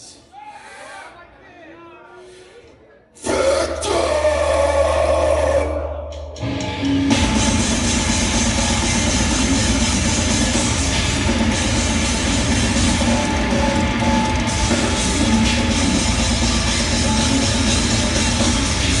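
A live heavy metal band starting a song. Faint crowd shouts come first. About three seconds in, a loud low chord rings out for about three seconds, then the full band comes in with distorted guitar and drums, loud and steady.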